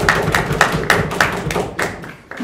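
Audience applause as a steady run of sharp knocks or claps, about three to four a second, dying away near the end.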